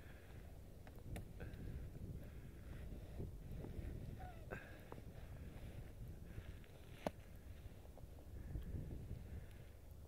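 Faint crunching and rustling of snow as a child in a snowsuit slides slowly down a snow-covered playground slide, pushing a heap of snow ahead. There are a few short sharp clicks, the clearest about seven seconds in.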